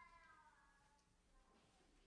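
Near silence: room tone, with a faint short squeak near the start that falls slightly in pitch.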